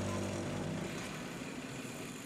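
Busy city road traffic: a steady wash of engine and tyre noise from passing cars and motorbikes. The tail of background music fades out in the first half-second.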